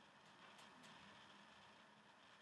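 Near silence: faint room tone with a low steady hum.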